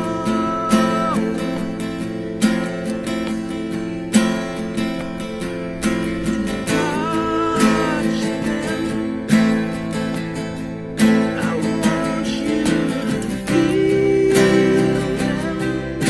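Two acoustic guitars strummed hard in a live duo performance, with a male voice singing and wailing over them in sustained, sliding notes.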